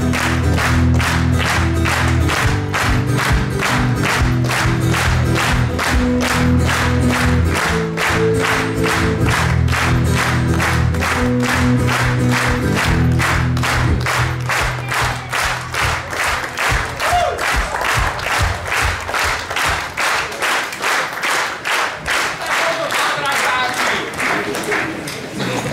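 A crowd clapping in time, about two to three claps a second, along with loud music. The music fades out about halfway through, and the rhythmic clapping carries on alone.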